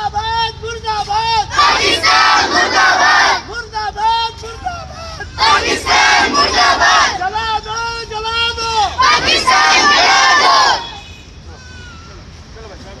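A group of children chanting slogans in call and response: one high voice calls out a line and the crowd shouts the answer back, three times over. The chanting stops about eleven seconds in.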